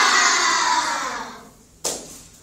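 A class of young children calling out an answer together in one long, drawn-out chorus that falls in pitch and fades out, followed by a single sharp click near the end.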